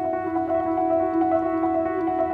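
Contemporary chamber music played live, with the piano in it: a sustained, ringing texture of notes held around two steady pitches, with small note changes throughout.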